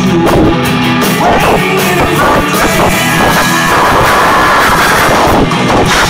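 Live rock band playing loud and steady: electric guitars and a drum kit, with no singing. The recording is of poor quality.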